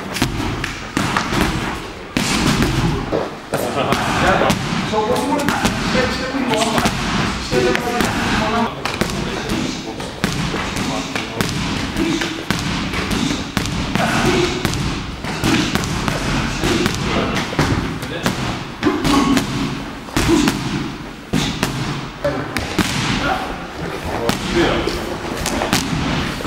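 Gloved punches repeatedly striking handheld strike shields, a run of dull thuds at an uneven pace, with people talking in the background.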